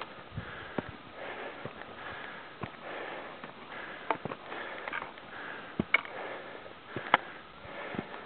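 A climber breathing hard while moving over rock, with sharp, irregular clicks of boots on loose stones.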